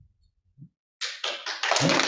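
Audience applause starting: after a second of near silence, a few single claps come about halfway through and are quickly joined by many more, building into full applause.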